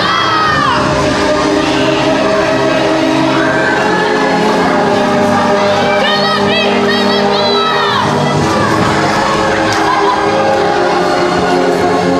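Music playing loudly with long held notes, and a group of people shouting and whooping in high voices over it, in a burst near the start and again about six to eight seconds in.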